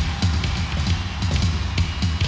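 Electronic drum sounds triggered by striking a wired drum vest worn on the body: a fast, uneven run of deep drum hits with sharper strokes above them.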